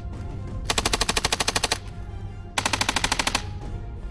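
Machine gun firing two rapid automatic bursts. The first lasts about a second and the second, shorter one comes about a second later.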